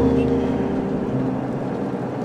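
Steady engine drone inside a moving bus.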